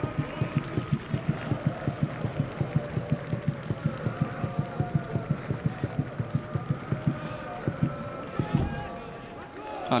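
Stadium supporters' drum beaten in a fast, even rhythm of about five beats a second, with crowd voices held above it. The drumming stops near the end.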